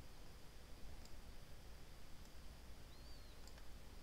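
A few faint, short computer mouse clicks over a low, steady hum, as the mouse is used to drag and resize a shape on screen.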